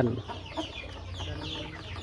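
Kampung chickens (Indonesian native chickens) calling softly: a scatter of short, high, falling notes, with a low cluck about a second and a half in.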